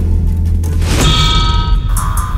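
A thin metal rod striking a small metal box instrument fitted with springs and upright metal rods: one clang about a second in that rings on in several tones. A steady low bass from background music runs underneath.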